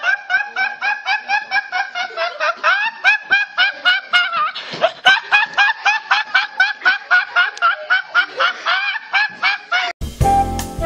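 A young man laughing uncontrollably: a fast, high-pitched, honking laugh of short repeated hoots, about five a second, running on without a pause.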